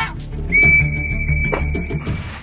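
A metal whistle blown in one long, steady, high blast, starting about half a second in, over background music with a beat.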